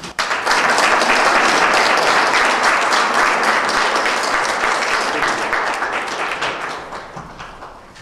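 Audience applauding after a speaker's thanks, starting suddenly about half a second in and slowly fading away near the end.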